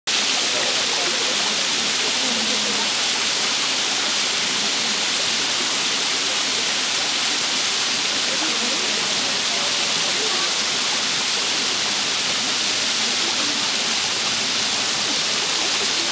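A 32-metre waterfall, its water spilling in thin streams down a steep rock face and splashing, making a steady rushing hiss.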